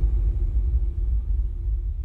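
Deep, low rumble from a logo-intro sound effect, slowly fading, with a faint steady hum above it: the tail of the whoosh that opens the intro.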